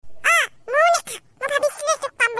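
A high-pitched cartoon character voice speaking: two drawn-out syllables that rise and fall in pitch, then quicker speech.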